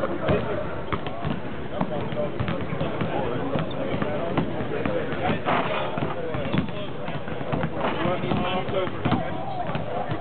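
Basketballs bouncing on a hardwood court, irregular thuds several times a second, over steady background chatter of many voices.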